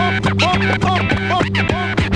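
Vinyl turntable scratching over a beat: a record pushed back and forth under the stylus and chopped with the mixer fader, giving quick repeated rising-and-falling glides, several a second, above a steady bass line.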